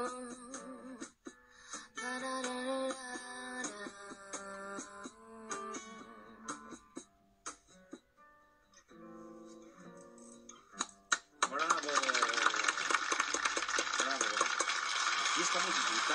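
The end of a bossa nova-style acoustic song: a woman singing over acoustic guitar, thinning to a few last plucked guitar notes, then clapping and applause from about twelve seconds in.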